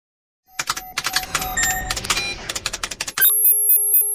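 Electronic logo-intro sound: a rapid flurry of clicks and short chiming tones, then from about three seconds a pulsing electronic beep over a thin high whine.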